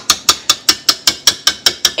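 Rapid, even clicking, about five clicks a second, from a stand mixer's wire whisk being worked to get the cake batter off it.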